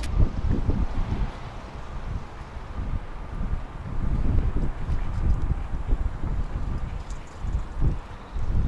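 Wind buffeting the microphone outdoors: an irregular, gusty low rumble that swells and fades.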